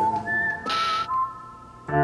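Instrumental passage of a live band: a thin, whistle-like melody of steady pure tones over keyboard chords, with a cymbal-like hit about two-thirds of a second in. The sound thins out in the second half, and the full band with bass comes back in right at the end.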